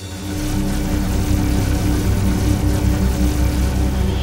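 Animated sci-fi sound effect of a spaceship's energy beam drilling down: a steady low mechanical drone with a pulsing throb and a held tone above it.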